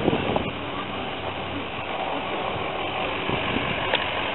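Steady outdoor background noise with faint voices mixed in.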